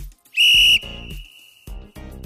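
A single short, loud, high-pitched whistle blast, like a sports whistle signalling play, with a faint ringing tail at the same pitch, over background music with a beat.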